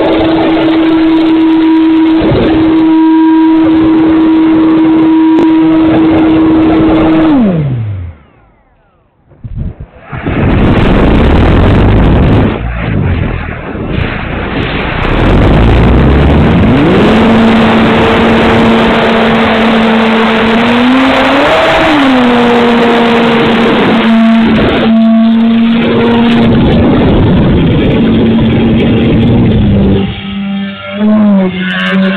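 Brushless electric motor and propeller of an E-flite Pitts S-1S RC plane, heard from its onboard camera. A steady high whine drops in pitch and cuts out about eight seconds in as the throttle is closed. A loud rush of wind noise on the camera follows, then the motor spools back up to a steady, lower whine that swells and falls briefly about two-thirds of the way through.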